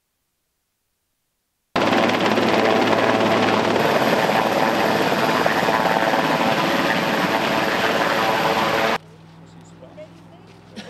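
Large twin-turbine helicopter hovering low, its rotor and engines loud and steady. The sound comes in suddenly about two seconds in and cuts off abruptly a second before the end, leaving a faint low hum.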